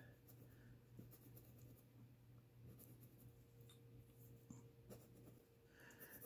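Faint scratching of colored pencil strokes on paper, over a low steady hum.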